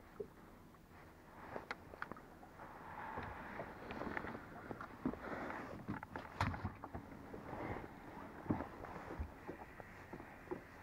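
Handling noise on a fishing boat: scattered light knocks and clicks with rustling as a crappie is unhooked by hand and put into the livewell. The loudest knock comes about six and a half seconds in.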